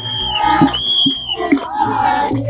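Group of women singing a Holi song together, with hand-clapping keeping an even beat. A long high note is held twice.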